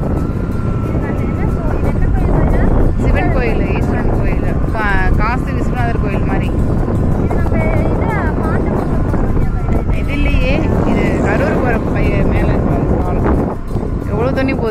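Loud steady wind-and-vehicle rumble from riding along a road, with voices or singing rising and falling over it.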